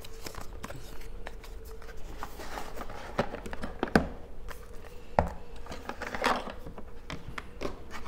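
A small cardboard box being opened by hand: its inner tray slid out and a power adapter lifted from it, with irregular scrapes, rustles and light knocks. A faint steady hum sits underneath.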